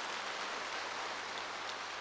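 Faint, steady applause from a large hall audience, heard as an even patter.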